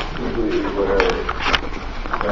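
A low, wavering vocal sound like a coo or hum, with a few sharp steps on a hard hallway floor.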